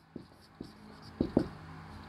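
Marker pen writing on a whiteboard: a few short, separate strokes, the two loudest close together about a second and a quarter in.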